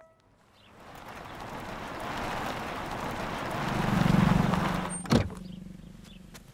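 An SUV driving up and coming to a stop, its tyre and engine noise swelling to a peak and then dying away, followed by one sharp knock about five seconds in as its door is opened.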